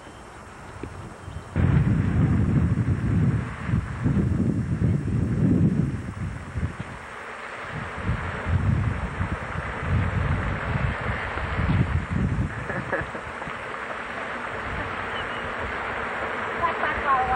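Wind buffeting a camcorder's built-in microphone: a loud, uneven low rumble in gusts that starts about a second and a half in, easing into a steadier rushing noise in the second half.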